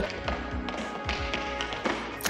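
Tap shoes striking a studio floor in a few sharp, scattered taps over sustained soundtrack music.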